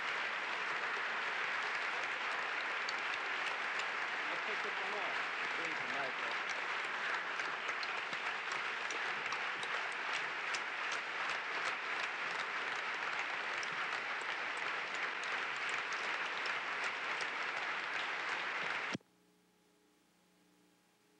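A large audience applauding, dense and steady, with many claps heard in it. It cuts off suddenly near the end, leaving only a faint electrical hum.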